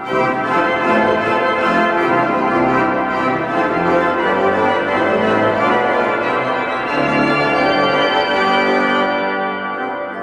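Pipe organ playing a brisk piece with many pipes sounding together in full, bright chords. It comes in louder at the start and softens, losing its brightest upper ranks, shortly before the end.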